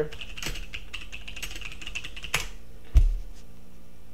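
Typing on a computer keyboard: a quick run of key clicks, then a single heavier thump about three seconds in.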